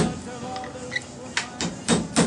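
Hammer tapping a pin punch, sharp metal strikes: one at the start, then three in quick succession, about a quarter second apart, in the second half. Background music plays underneath.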